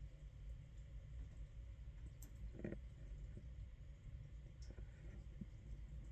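A few faint clicks of a computer mouse over a low steady hum.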